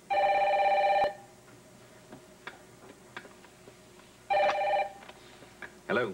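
Desk telephone ringing twice with an electronic ring: one ring of about a second, then about three seconds later a shorter one, before the handset is picked up.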